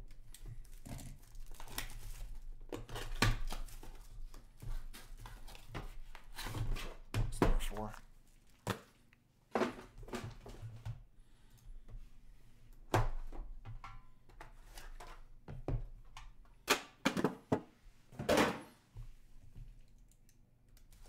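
Plastic shrink wrap being cut and torn off sealed hockey card boxes, with irregular crinkling and rustling and a few sharp tears. Now and then a box thunks on the table.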